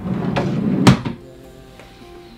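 A desk drawer pushed shut: a short slide that ends in a sharp knock just under a second in.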